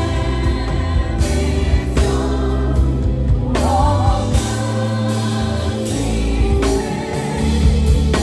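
A live gospel band plays with drums, bass and keyboards under sung vocals. A steady bass line runs under repeated drum strikes, and the voice swells about halfway through.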